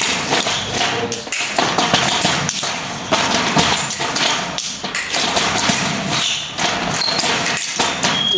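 Fencing blades clicking and clashing in a rapid exchange, mixed with the thuds of fencers' feet stamping and lunging on the piste. The taps and knocks come in quick irregular runs.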